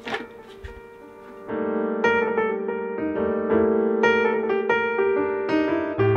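Background piano music comes in about a second and a half in, with notes struck roughly twice a second.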